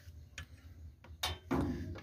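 A couple of faint clicks and handling rustle from a work light being unclipped, over a low steady hum.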